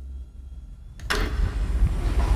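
Large sheet-metal stamping press in a car-body press plant: a low hum, then a sharp click about a second in and a sudden loud run of machinery noise with a deep rumble as the press starts working.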